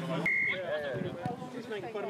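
A single short, steady high beep or whistle note about a quarter second in, lasting about a third of a second, followed by men's voices talking.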